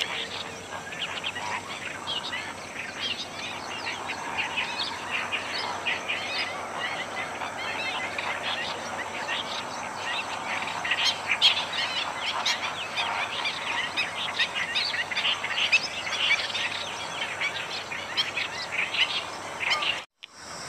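A dense chorus of many small birds chirping and calling at once: overlapping short, high, quickly changing notes with no pause.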